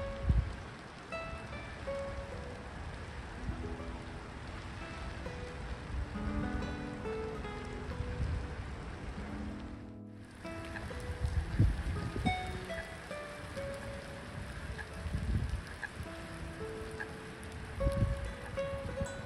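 Steady rain falling on lake water, mixed with soft, slow plucked-guitar music. All sound drops out briefly about ten seconds in.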